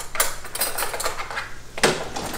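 A glass jam jar and a utensil being handled: a run of short clicks and scrapes, the loudest near the end, as the jar is opened and a spoon is got to it.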